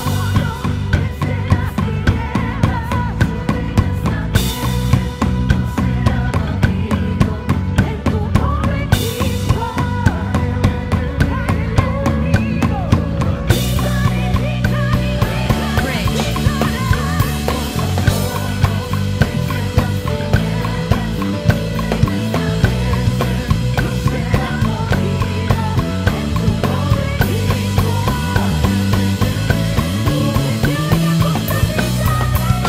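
A live band playing with the drum kit up front: kick drum, snare and Paiste cymbals in a steady beat, over a prominent electric bass line and other band instruments.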